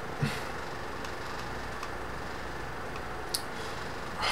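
Room tone: a steady low hum with hiss, broken by a brief soft sound just after the start and a single faint click a little over three seconds in.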